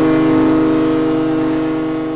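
A ferry's horn sounding one long, steady blast that slowly fades.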